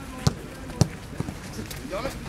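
A football kicked twice on grass, two sharp thuds about half a second apart, with faint voices of players in the background.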